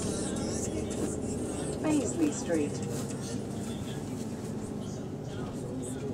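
Inside a city bus on the move: a steady drone of engine and road noise. About two seconds in come a few short, falling voice-like sounds.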